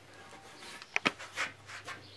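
A thick laminated redwood sign board being picked up and stood on its edge on a table: a few short knocks and scrapes in the second half, otherwise quiet.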